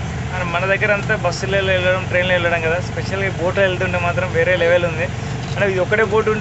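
A motorboat's engine running with a steady low drone under a man talking.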